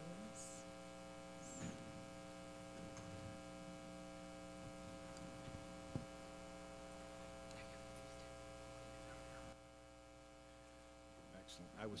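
Low, steady electrical mains hum in a quiet room, with a single faint click about six seconds in. The hum drops a little in level near the end.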